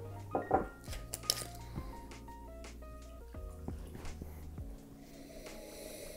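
Small glass tasting glasses knocking and clinking on a wooden bar counter, loudest twice in the first second and a half, over quiet background music.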